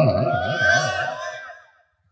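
A man's voice holding out the end of a phrase in a wavering, chant-like tone through a public-address system, trailing off over about a second and a half into dead silence.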